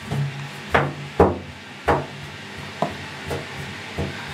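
German Shepherd's paws and claws knocking and scraping on the bathtub as she moves about in it: about five separate knocks over a few seconds, with a low steady hum underneath.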